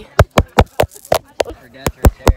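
Fingers tapping on the phone right at its microphone: a run of sharp taps, about four a second.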